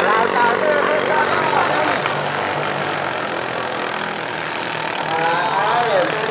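Modified rice tractor drag racers running flat out through a flooded paddy: a steady engine drone with a hiss of water spray from the paddle wheels. A person's voice is heard over it near the start and again near the end.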